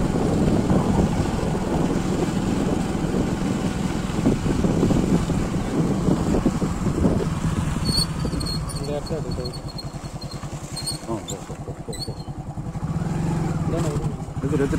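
Motorcycle engine running while riding, with wind rumble on the microphone. About eight seconds in it eases off to a slower, quieter low putter, then picks up again near the end.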